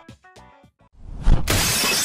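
Cartoon sound effect of a plate-glass shop window smashing: a heavy thump about a second in, then glass shattering.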